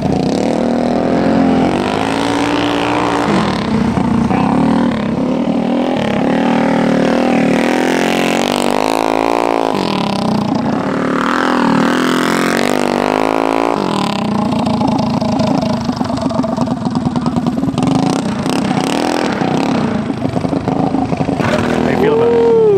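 Minibike engine revving as the bike is ridden hard across a dirt track. The pitch climbs and drops with the throttle several times, then holds fairly steady through the last several seconds.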